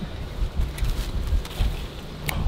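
Wind buffeting the camera microphone: an uneven low rumble that swells and dips, with a few faint ticks over it.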